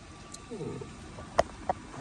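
A mostly quiet pause in which a man gives a short, falling murmur, like a hesitant 'um', followed by two faint, sharp clicks.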